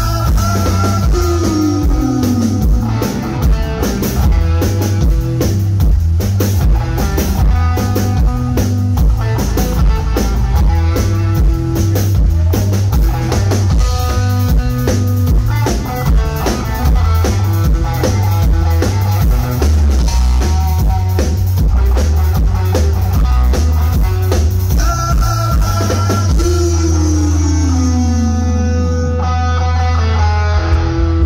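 A live rock band plays instrumentally on electric guitar, bass guitar and drum kit in a loud, driving groove, with a downward slide about a second in and again near the end. In the last few seconds the beat gives way to a held note.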